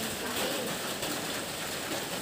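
Steady hissing background noise with no clear speech, rain-like in character.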